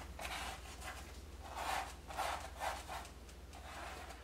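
Small brush dragging oil paint across stretched canvas: several soft, brief rubbing strokes, over a steady low hum.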